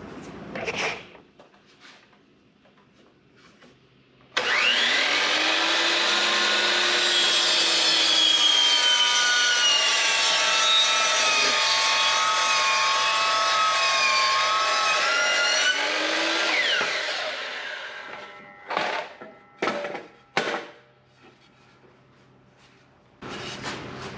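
DeWalt miter saw motor spinning up about four seconds in, its blade cutting at an angle through a 2x6 softwood board for about ten seconds, then winding down. A few short knocks follow.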